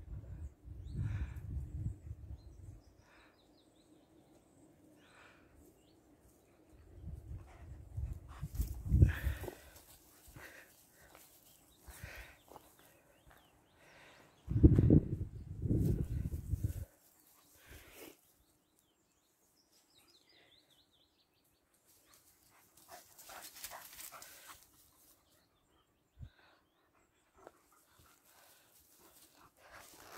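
German Shepherd dog panting and moving about, in short irregular breaths. Three spells of low rumble on the microphone break in, the loudest about halfway through.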